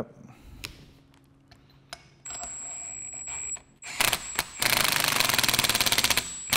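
Cordless impact driver tightening a fine-threaded part of an air valve. From about two seconds in its motor runs with a steady whine, and over the last second and a half it hammers in a fast, even rattle of impacts as the part is driven down to seal on its O-ring.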